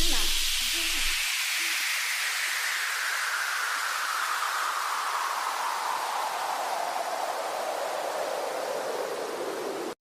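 A DJ white-noise sweep falling slowly and steadily in pitch, the closing effect of a dance remix. The track's beat and bass cut out about a second in, leaving only the descending hiss.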